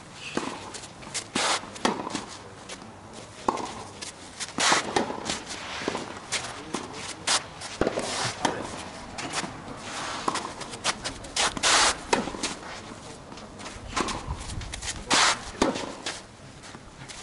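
Tennis rally: sharp racket strikes on the ball traded back and forth at irregular intervals, with players' footsteps and shoe scuffs on the court between the hits.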